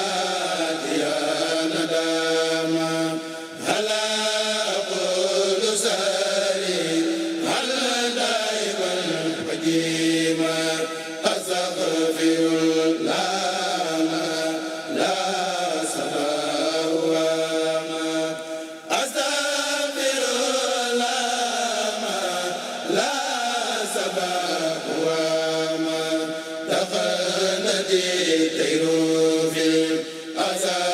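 A group of men chanting Islamic religious recitation together through microphones, in long held melodic phrases with brief pauses between them.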